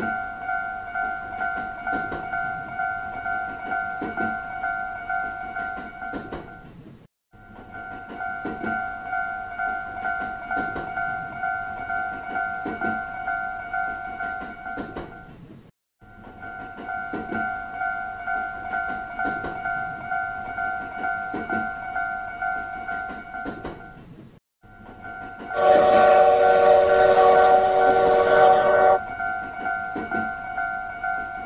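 Railroad crossing alarm bell ringing with even, repeating dings, broken by two short gaps. About 25 seconds in, a loud several-tone train horn sounds over it for about three seconds.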